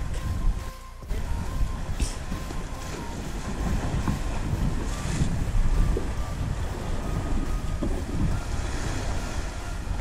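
Wind buffeting the microphone on an exposed sea cliff, with surf washing against the rocks below. Steady, with a brief drop in level about a second in.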